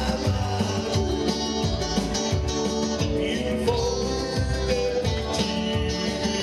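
Live pop band playing a song, with singing and electric guitars over a steady beat.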